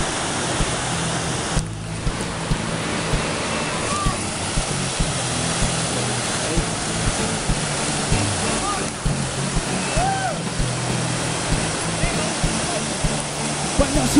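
Steady rush of ocean surf breaking over a rocky shore, with wind noise, at an even level throughout. Faint distant voices call out now and then over it.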